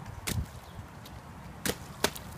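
Children's rubber rain boots stomping into a shallow puddle on pavement: two sharp splashes, about a second and a half apart.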